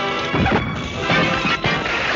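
Cartoon crash and smash sound effects of a machine being smashed amid electric sparks, several heavy impacts about a third of a second, one second and a second and a half in, over orchestral score music.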